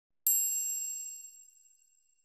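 A single bright, high-pitched chime struck once about a quarter second in, ringing with several high overtones and fading away over about two seconds: the sound effect of an animated logo intro.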